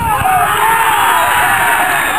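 Sideline spectators shouting and cheering together, several voices at once, loud, as a goal goes in.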